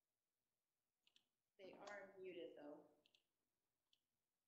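A person's voice says a brief, soft phrase of about a second and a half, a little past the middle. A couple of faint clicks come just before and just after it.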